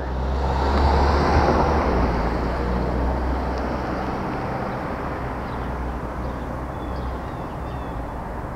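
Street ambience: a vehicle passing, its low rumble and road noise swelling about a second in and slowly fading. A few faint bird chirps near the end.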